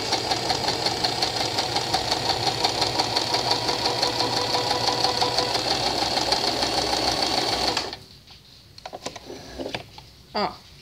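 Domestic sewing machine stitching a straight seam, running steadily with a fast, even stitch rhythm, then stopping abruptly about eight seconds in. A few faint fabric-handling sounds follow.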